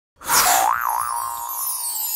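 Cartoon sound effect for an animated logo: a springy boing whose pitch wobbles up and down a few times, then holds and fades out.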